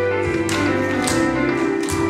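Tap shoes striking a stage floor: about three sharp taps, the clearest about half a second in, at one second and near the end, over recorded dance music with sustained tones.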